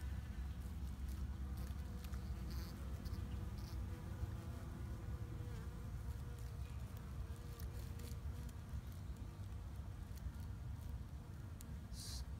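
A cluster of honeybees on exposed honeycomb in a rotten log, buzzing in a steady low drone; in the cold the bees are sluggish, almost hibernating.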